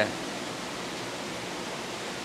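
Steady rushing hiss of aquarium water circulation and filtration, with no breaks or separate events.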